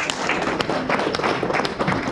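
A small group of people clapping their hands in applause: quick, irregular overlapping claps.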